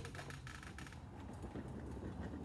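Small clicks and creaks as a person shifts and settles in a swivel office chair, mostly in the first second, over a steady low hum.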